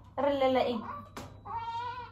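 Premature newborn baby crying: a thin, high cry about a second long that falls in pitch, then a shorter, steadier cry near the end.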